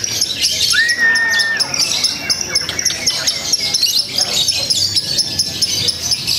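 Fischer's lovebird chattering in a fast, continuous stream of high chirps, the long unbroken song that lovebirds are judged on at song contests. A short steady whistle sounds about a second in.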